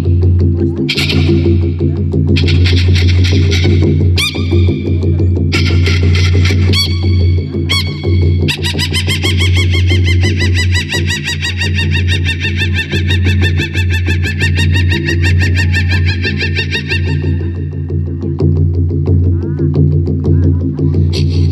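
A woman throat singing: a steady low drone with high whistling overtones above it, first in short phrases, then one long wavering overtone held from about eight seconds in to about eighteen seconds.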